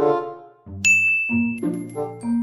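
A single bright ding sound effect about a second in, ringing briefly, over light background music. It is a cartoon cue for a sudden realization.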